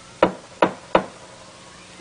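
Someone knocking on a door three times, short sharp knocks about a third of a second apart.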